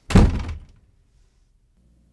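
A single heavy thunk at the very start, a hard impact that dies away within about half a second.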